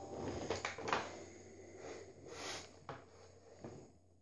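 Faint clicks, taps and scuffs from an electric guitar's strings and body being handled, with no notes ringing.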